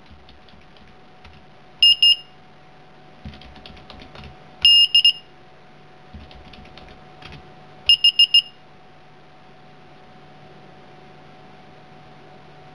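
Arduino-driven active piezo buzzer beeping in three short bursts of quick high beeps, about three seconds apart, the last burst of four beeps. Faint clicks sound between the bursts over a low steady hum.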